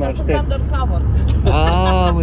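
People laughing and calling out inside a car, over the steady low rumble of the car cabin. Near the end one voice breaks into a loud, drawn-out laugh.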